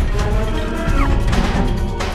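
TV title theme music with heavy percussive hits and a crashing impact effect, and a short falling sweep about a second in.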